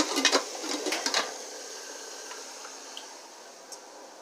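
Chicken and onions sizzling in a pot, with a few clinks and knocks of cookware in the first second or so. The sizzle fades away over the next two seconds.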